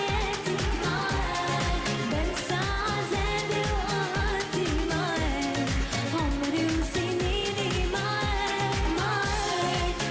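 Arabic pop song sung by female vocalists over a band or backing track, with a steady, regular kick-drum beat and a winding sung melody throughout.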